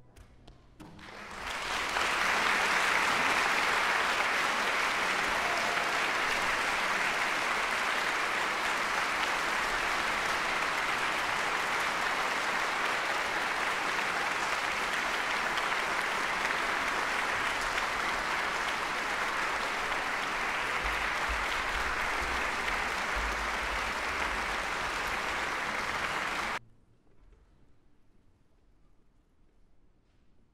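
Concert audience applauding: after a brief hush the clapping builds within about a second, holds steady, then cuts off suddenly near the end.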